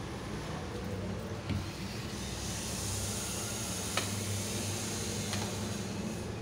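A spoon stirring gram-flour batter in a metal bowl, giving a few faint clicks against the bowl, over a steady background hum and hiss.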